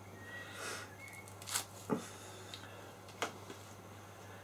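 A few light clicks and soft rustles of small objects being handled, over a faint steady low hum.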